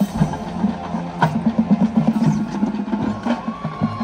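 Marching band playing: drumline strokes in a steady rhythm under the winds, with a brass note held near the end.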